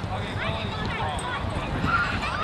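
Many distant voices of children and adults calling and chattering across an open playing field, with no clear words, over a steady low rumble.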